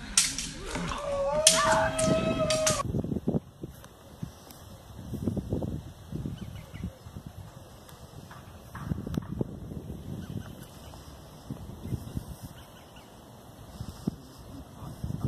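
Staged battle noise: shouting and sharp clatters with one long, held honking cry, cut off abruptly about three seconds in. Then low gusts of wind buffet the microphone.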